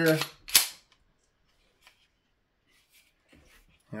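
One sharp metallic click about half a second in from the slide of an empty Canik Rival SFX pistol being handled.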